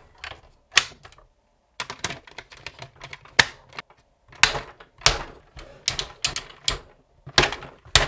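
Hard plastic parts of a toy fire truck clicking and knocking as they are handled and fitted together: the water-cannon piece is set into the bed and the ladder arm is moved. The sound is an irregular run of sharp clicks with brief pauses.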